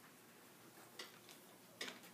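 Near silence in a quiet room, with faint ticks about a second apart.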